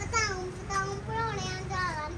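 A young girl singing a short tune in a high voice, with notes held and sliding up and down.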